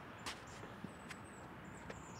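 Quiet woodland ambience: faint high bird chirps over a low hiss, with three or four short, soft ticks scattered through it.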